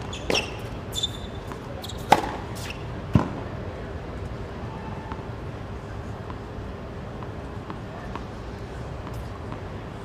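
Tennis ball being hit with a racket and bouncing on a hard court: a few sharp pops in the first three seconds or so, the loudest about two and three seconds in. After that only a steady murmur of spectators and outdoor background noise.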